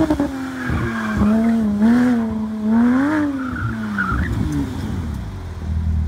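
Porsche 911 GT3 flat-six engine with an IPE exhaust, held at high revs while driving hard through a turn, its pitch swinging up and down with the throttle. Near the end the note fades into a low rumble as the car settles.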